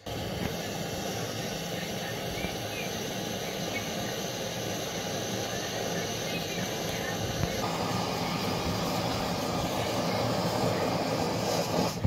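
Handy Camper's Stove, a small brass Japanese petrol camping stove, burning with a steady rushing noise from its burner. The sound fills out and grows slightly louder a little past halfway.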